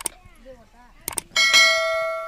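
A metal pan struck once about a second and a half in, ringing with a clear, bell-like tone that fades slowly, after a few short knocks.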